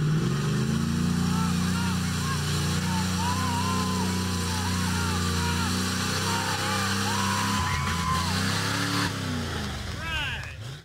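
A 4x4 truck's engine held at high revs as it drives through a mud pit. The revs climb in the first moments, hold steady, then fall away about nine seconds in. People shout and whoop over it.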